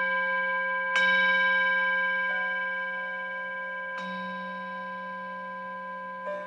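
Insight Timer meditation bell ringing with several overlapping tones, struck again about a second in and once more about four seconds in, each strike slowly fading; it marks the start of a ten-minute meditation.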